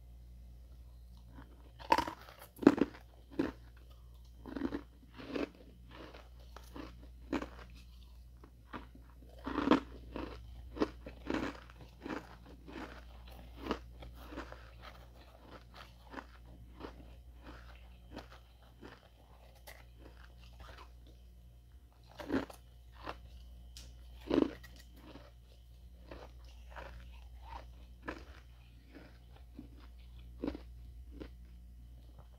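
Ice being bitten and chewed close to the microphone: a steady run of crisp crunches, with the loudest bites about two seconds in, around ten seconds, and twice past the twenty-two-second mark.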